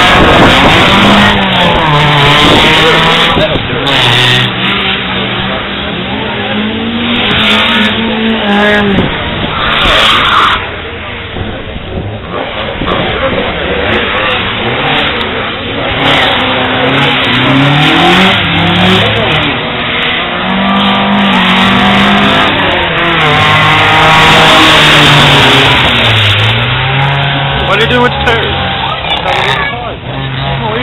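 Classic Ford Escort drift cars running hard round a kart track, their engines revving up and down again and again, with tyres squealing and skidding at times.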